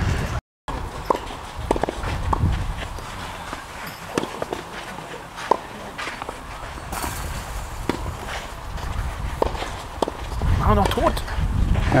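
Tennis on a clay court: a few sharp racket-on-ball strikes, one to two seconds apart, with footsteps on clay over a low outdoor rumble. Voices come in near the end.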